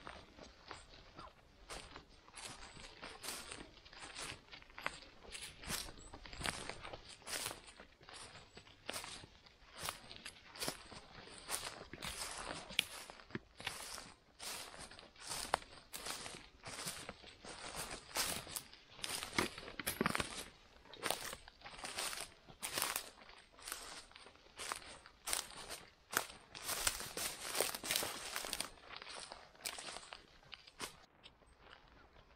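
Irregular crackling and rustling of moss, twigs and dry leaves on the forest floor as hands pull up a mushroom and part the low plants, with the crackles thickest near the end.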